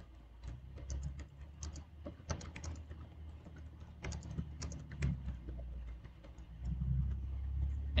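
Typing on a computer keyboard: quick, irregular runs of key clicks with short pauses between words, over a low hum that swells near the end.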